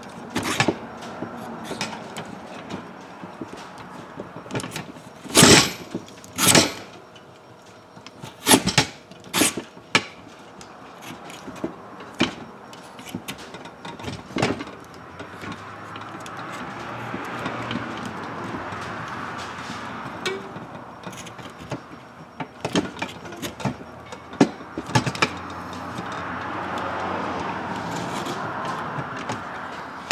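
Utility knife scraping and cutting the remains of an old grip off a fishing-rod blank. Several sharp clicks come in the first ten seconds, then a steadier rasping scrape runs through the second half.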